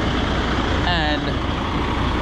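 Truck engine idling steadily, a low constant rumble, with one short spoken word about a second in.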